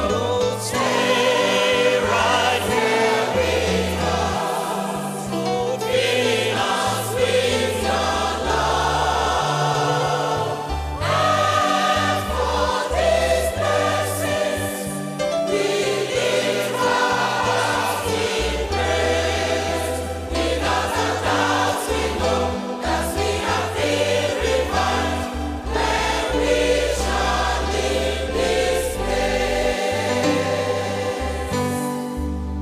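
Choir singing a gospel song with instrumental backing and a strong bass line.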